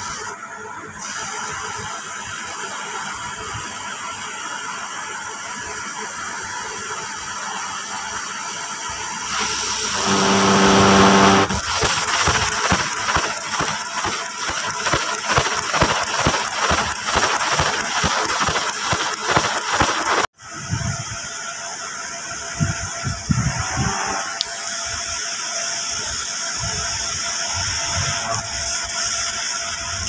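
Laser cutting machine running, a steady hiss and hum with a high whine. About ten seconds in a buzzing tone sounds for about two seconds. A fast, even crackling follows and cuts off abruptly about twenty seconds in, after which the steady hum carries on.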